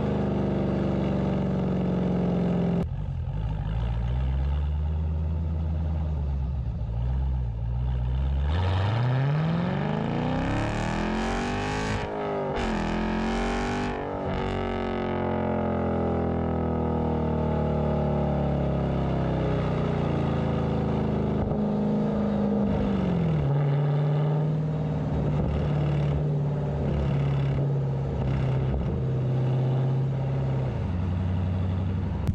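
Exhaust of a Dodge Challenger Scat Pack's 392 (6.4-litre) HEMI V8 with its resonators cut out, heard at the tailpipe while driving. It runs low and steady, then about a third of the way in the revs climb hard under acceleration, dip briefly at an upshift around the middle and climb again, then ease off and settle into a steady cruise.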